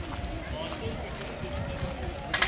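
Voices of adults and children talking and calling across an open playground, over a steady low rumble.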